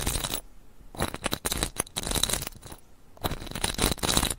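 Close-miked ASMR trigger sounds: about four short, noisy bursts of handled-object sound, each half a second or so, with brief quieter gaps between.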